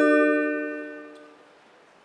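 A single chime: several tones struck together at once, ringing and fading away within about a second and a half.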